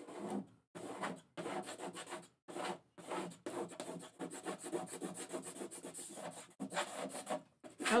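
Plastic paste scraper scraping rehydrated chalk paste off a non-porous chalkboard surface, in a run of short strokes with brief pauses and a longer stretch of steady scraping in the middle.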